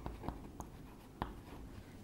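Chalk writing on a blackboard: faint scratching with a few sharp little ticks as the chalk strikes the board, the loudest a little past a second in.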